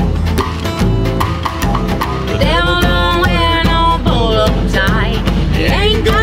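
A band playing a slow song: a woman singing over acoustic guitar, upright bass and drums keeping a steady beat, her voice coming in strongly about halfway through.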